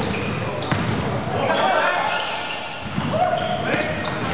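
Sound of a live indoor basketball game in a gym: the ball bouncing and knocks of play mixed with the voices of players and spectators.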